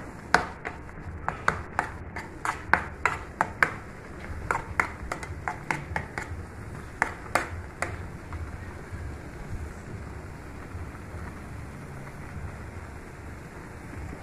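Metal spoon knocking and scraping against a metal pan while stirring thick pirão: a string of sharp, irregular clinks for the first eight seconds or so, then only a low steady background noise.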